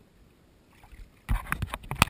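Water splashing close against the camera's microphone: quiet at first, then a sudden run of loud, irregular splashes and sloshes about a second and a quarter in.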